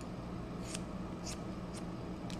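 Hair-cutting scissors snipping through short hair, three quiet crisp snips about half a second apart.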